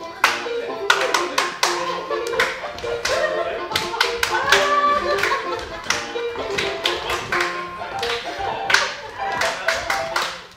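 Lively dance music with hand clapping and foot taps on a wooden stage floor, the sharp claps coming quickly and in time with the tune.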